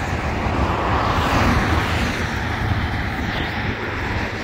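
Steady rushing noise with a low rumble, swelling about a second in and easing off again.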